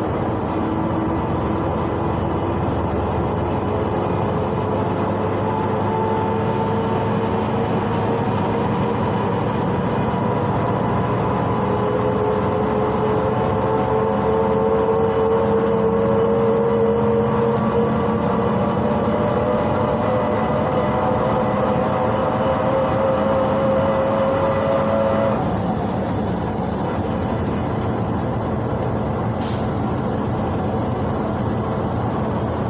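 Cabin noise of a PAZ-32054 bus under way: the rumble of its ZMZ-5234 V8 petrol engine and drivetrain with a whine that rises slowly in pitch as the bus gathers speed. About 25 seconds in, the whine cuts out and the noise eases a little; a short click comes near the end.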